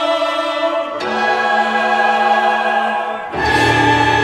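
Choir singing long held chords with instrumental accompaniment. The chord changes about a second in, and again near the end, where a low bass note comes in.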